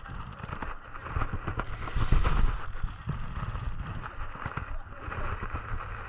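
Wind rumbling on the microphone, with rustle and clicks of handling as a Shimano Stella SW saltwater spinning reel is cranked.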